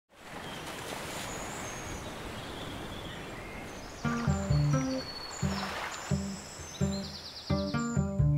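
Steady outdoor ambience, an even hiss with a few faint bird calls. About halfway through, background music begins with plucked low string notes in a slow rhythm.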